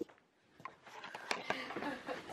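A brief click at the start, then a quiet small room with a few faint clicks and soft handling noises from belongings being packed.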